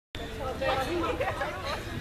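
Indistinct chatter of several people talking at once, overlapping voices with no clear words.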